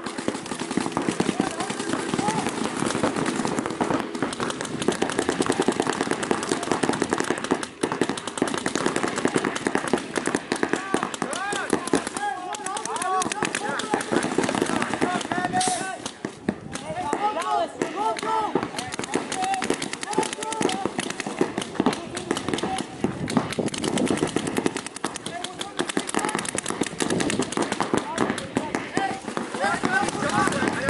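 Several paintball markers firing rapid streams of shots, a dense, continuous crackle, with players shouting across the field in the middle of the stretch.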